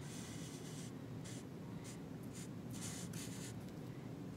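Black Sharpie permanent marker drawing on paper: the felt tip rubs across the sheet in several faint strokes as a line is traced over pencil.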